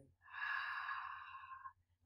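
A woman's long, audible breath out through the mouth, lasting about a second and a half and starting a moment in. It is a deliberate slow breath of a calming belly-breathing exercise.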